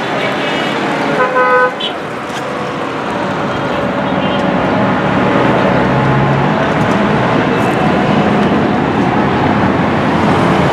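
Road traffic with engines running past and a car horn honking briefly about a second and a half in. The traffic noise grows louder in the second half as heavier vehicles pass.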